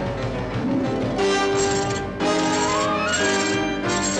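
Orchestral cartoon score with held string chords that change every second or so, and a rising run of notes about two and a half seconds in.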